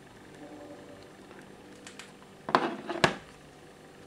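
A smartphone handled and set down on a wooden table: two sharp knocks with some clattering between them, about two and a half and three seconds in.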